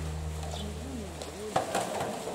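Polar bear splashing into the water of its pool to seize a floating foam dumbbell toy, with a sudden splash about one and a half seconds in and water sloshing after it. People's voices murmur in the background, and a steady low hum cuts off at the splash.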